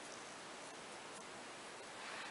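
Faint steady hiss of room tone, with a few faint ticks.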